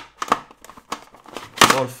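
Layers of a giant plastic 3x3 Rubik's cube being turned by hand: several sharp clacks and scrapes of the big plastic pieces as the stiff layers move.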